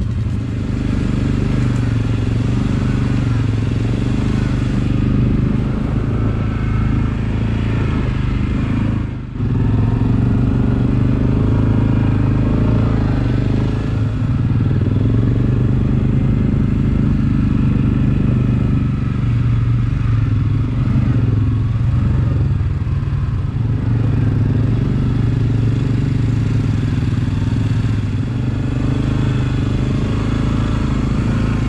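ATV (quad) engine running steadily under way on a dirt trail, with some rattle from the machine, and a brief drop in the sound about nine seconds in.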